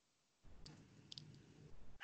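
Near silence with a few faint clicks, about half a second and a second in.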